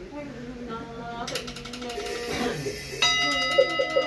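A chanted prayer trails off, then a fast rolling rattle of knocks begins about a second in, and about three seconds in a ritual bell is struck, ringing on with several clear steady tones.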